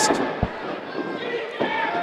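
A wrestling ring bell struck to start the match, ringing with steady tones through the second half. A low thump comes about half a second in.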